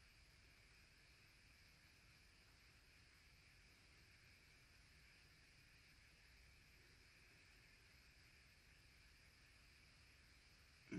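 Near silence: steady faint background hiss.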